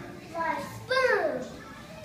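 A young child's voice: two short, high-pitched utterances about half a second and one second in.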